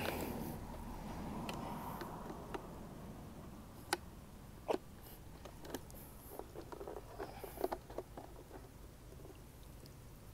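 Plastic latch clips and lid of a Fluval 307 canister filter being worked open: a few sharp clicks about four and five seconds in, then smaller plastic ticks and knocks as the motor head is pried off the canister.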